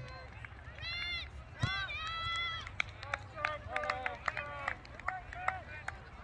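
Children's high-pitched shouts and calls across a soccer field, a few longer cries early on and then many short calls, over a steady low rumble.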